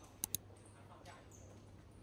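Faint ambience of an underground pedestrian passage: a steady low hum with faint voices and short high squeaks. Two sharp clicks come in quick succession about a quarter second in.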